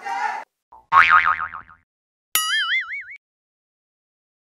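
Talk cuts off half a second in, then cartoon sound effects: a warbling, wobbling tone about a second in, then a sharp springy boing whose pitch wavers up and down for under a second.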